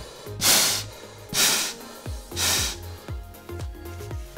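Breathing through an Ameo PowerBreather snorkel's mouthpiece: three hissing breaths about a second apart, the first the loudest, over background music.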